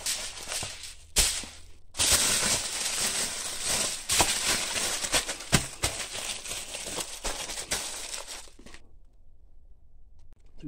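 Aluminium foil crinkling and crumpling as it is folded by hand around a rock sample. It starts with a few light crinkles, becomes a dense crackle about two seconds in, and stops shortly before the end.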